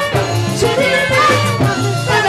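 Live festival band playing: saxophones carrying the melody over drums and a bass line, with a steady dance beat.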